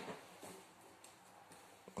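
Near silence: quiet room tone with a few faint small clicks.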